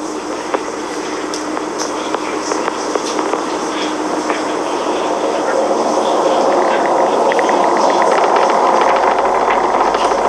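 Falcon 9 first stage's nine Merlin 1D engines heard from miles away: a rumbling roar that grows steadily louder as the sound reaches the camera, with sharp crackling in its second half.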